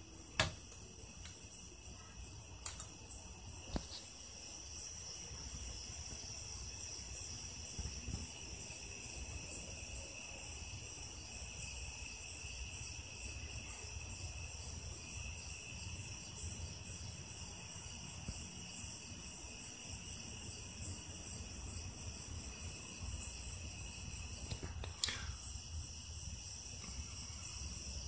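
Quiet background with a steady high-pitched whine made of several tones over a low hum, and a few faint clicks near the start and once about 25 seconds in.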